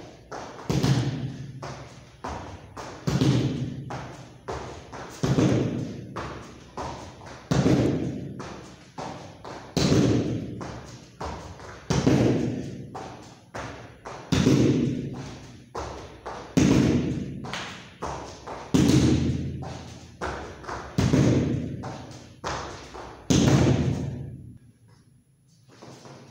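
Heavy thuds of a body and hands landing on a foam floor mat and training pad, about one every two seconds, with lighter taps and thumps between them.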